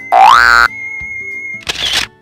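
A loud cartoon sound effect that sweeps quickly upward in pitch for about half a second, over background music with a steady high note. Near the end comes a short hissy burst.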